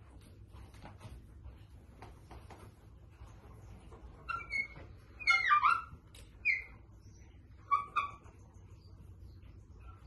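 High-pitched whining cries from a pet animal: several short bursts whose pitch bends, bunched between about four and eight seconds in.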